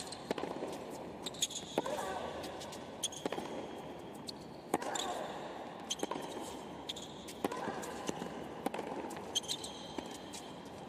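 Tennis rally on a hard court: racket strikes on the ball land about every second and a half, with shoe squeaks on the court surface between them over a low crowd murmur.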